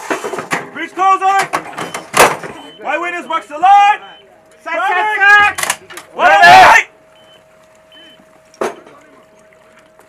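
Howitzer crew shouting commands at an M777 howitzer in short bursts, the loudest shout about six and a half seconds in, with sharp metallic knocks from the gun during the first two seconds. A faint steady tone sounds from about five and a half seconds on.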